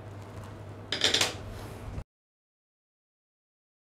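Paper pattern pieces rustling briefly as they are handled, about a second in, over a faint low hum. The sound then cuts out to dead silence about halfway through.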